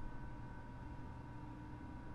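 Faint steady electrical hum and hiss with a few thin steady tones, the background noise of a voice-recording setup; no other sound.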